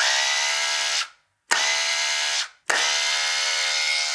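Cordless split-end hair trimmer's small electric motor running with a steady whine in three bursts of about a second each, with short gaps between; the last runs on past the end.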